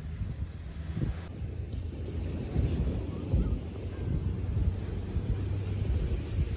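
Wind buffeting the microphone at the beach: a low, gusty rumble that rises and falls, with a few dull thumps.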